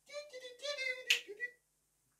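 A high-pitched voice making a short wordless sound, with one sharp snap about a second in.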